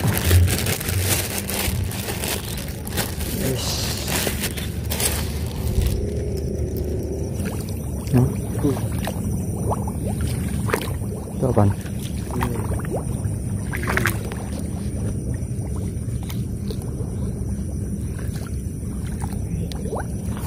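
A plastic bag rustling and crinkling for about the first six seconds as a freshly caught tilapia is put away, then a steadier, lower sloshing of legs wading through shallow paddy water, with a few short squeaks.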